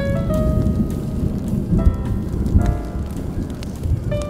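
Deep rolling thunder rumbling steadily under rain, mixed with smooth jazz that plays a few held notes.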